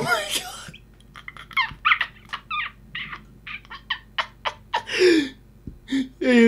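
A person laughing: a loud burst at the start, then a run of short, breathy, high-pitched giggles a few tenths of a second apart, ending in one longer falling laugh about five seconds in.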